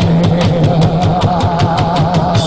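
Live band playing: a quick, even cymbal tick, about seven a second, over a steady held low note and a wavering higher held note.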